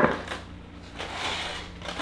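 A foil-covered baking dish set down on a wooden table with one sharp knock at the start, then quiet rustling as oven-mitted hands handle the foil.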